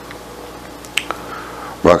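Low background hum with one short, sharp click about halfway through, then a man's voice starts near the end.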